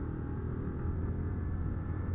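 Honda CG 150 single-cylinder motorcycle engine running steadily while cruising, a low even hum mixed with road noise.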